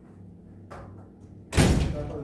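A sharp, loud bang about one and a half seconds in, fading quickly, after a lighter knock near the middle.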